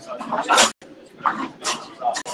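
Indistinct voices of people chatting in a room, with a brief dropout in the sound just under a second in.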